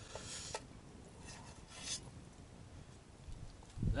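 Faint scraping of a spoon in a metal camping pot of soup: two short scrapes, one at the start and one about two seconds in, with a couple of light clicks.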